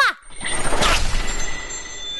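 Cartoon transition sound effect: a whoosh that swells to a peak about a second in, with thin high shimmering tones ringing on over its tail.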